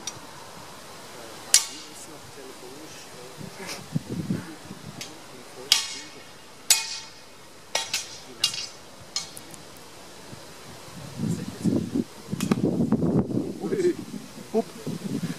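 Sword blades clashing during broadsword sparring: about ten sharp, ringing strikes at irregular intervals, some in quick pairs. Near the end, a couple of seconds of louder, low-pitched noise.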